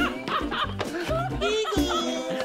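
Background music with a steady bass line, with laughing over it.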